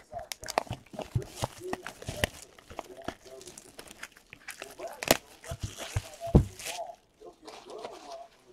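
Plastic shrink-wrap being torn and crinkled off a cardboard trading-card box, with crisp cardboard clicks and taps as the box is handled and opened. Two louder knocks come about five and six seconds in.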